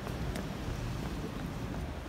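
Low, steady rumble of street noise picked up by a handheld phone microphone, with a few faint ticks.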